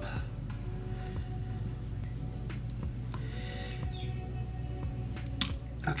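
Quiet background music with faint clicks of a precision screwdriver against the camera body, and one sharp click near the end as a plastic tab releases the screen backing.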